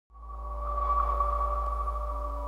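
Sustained soundtrack drone fading in from silence: a deep low rumble with several steady tones held above it, unchanging once it has swelled in.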